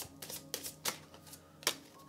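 A deck of oracle cards being shuffled by hand: a quick, irregular run of soft card snaps and flicks, the loudest near the end.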